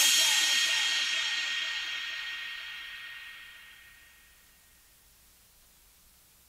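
The last crash cymbal of a phonk track ringing out and fading away over about four seconds, after which there is near silence.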